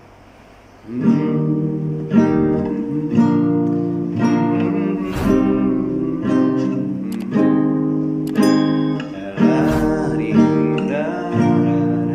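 Acoustic guitar with a capo playing the C, G, A minor and F chord progression, a new chord sounding about once a second after a quiet first second.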